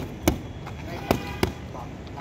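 Boxing gloves smacking focus mitts during padwork: four sharp hits in two quick one-two pairs, one right at the start and one a little past a second in.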